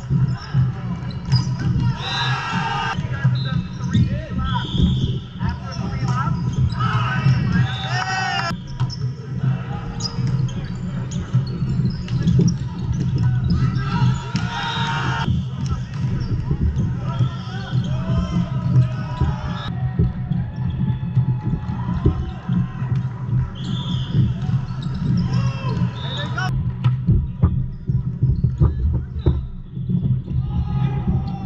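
Indoor volleyball play on a hardwood court in a large echoing hall: volleyballs being hit and bouncing, with players' voices calling out, over a steady low hum of the hall.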